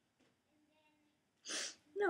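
A quick, sharp intake of breath through the mouth, one short hissy rush about a second and a half in, after near silence.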